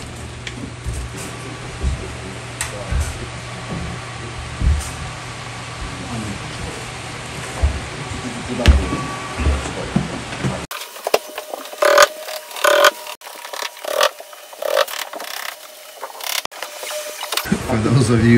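A small delivery truck's engine idling steadily, with a few knocks. Then, after a sudden change, an irregular run of knocks and clatter.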